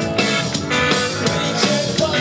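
A garage rock band playing live and loud: electric guitar, electric bass and a drum kit driving a steady beat.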